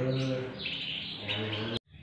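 Several caged canaries singing together, a dense run of chirps and trills. The sound breaks off suddenly near the end.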